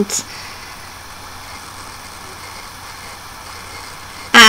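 A pause between spoken words: only a steady, low background hum and hiss of room tone.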